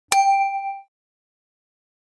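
A single bright metallic ding, a struck bell-like tone that rings out for under a second and then stops dead.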